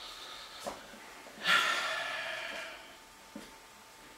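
A man's breathy exhale, loud and sudden at about a second and a half in and fading away over about a second, with a few faint clicks before and after.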